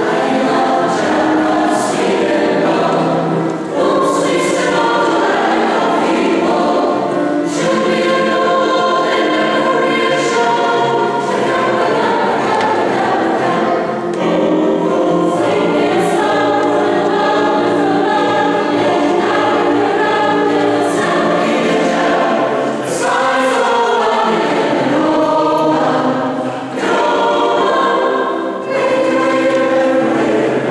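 Chamber choir of mixed voices singing in a church, the sound sustained and full, with short breaks between phrases near the end.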